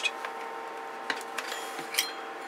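A few light clicks and taps of coax cable connectors being handled and fitted on a bench, with a sharper click near the end, over a faint steady hum.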